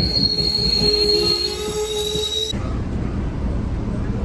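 MBTA Commuter Rail train rolling past close by as it pulls in, its wheels squealing with high steady tones and lower sliding tones over the rumble of the cars. About two and a half seconds in, the squeal cuts off abruptly and gives way to the low, even rumble heard inside a moving coach.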